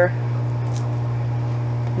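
A steady low hum with faint higher overtones, unchanging throughout. A few faint short crackles come a little under a second in.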